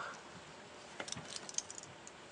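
Faint clinks of a stainless-steel watch bracelet's links as the watch is turned over in gloved hands: a few small clicks in the second half.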